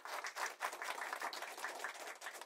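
Audience applauding: many hands clapping steadily.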